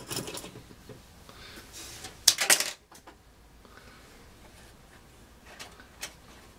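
Handling noises from small objects being picked up and moved: a brief clattery rustle a little over two seconds in, with softer rustling at the start and a faint click near the end.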